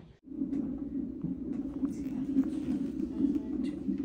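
Fetal heart monitor's Doppler ultrasound sound during a non-stress test: the baby's heartbeat as a continuous pulsing whoosh. It starts abruptly a fraction of a second in.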